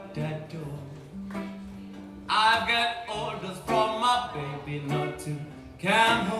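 Small blues band playing live, with electric guitars, bass and drums; a voice or lead line comes in strongly about two seconds in, over a steady walking bass.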